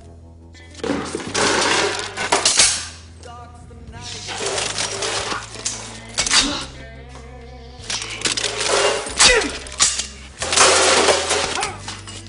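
Staged film fist-fight sound effects: about five loud bouts of crashing and smashing, furniture and wood hitting and breaking as bodies are thrown about, over a steady low music score.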